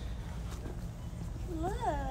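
A baby giving a short, high squeal that rises and falls, about a second and a half in, over a low steady rumble.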